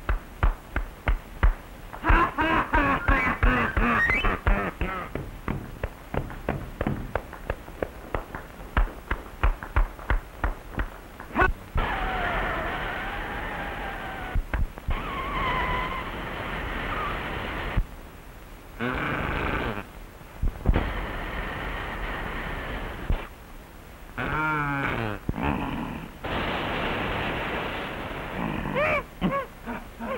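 Early-1930s cartoon soundtrack: a run of quick percussive knocks for about the first eleven seconds, then wavering pitched tones that break off briefly several times.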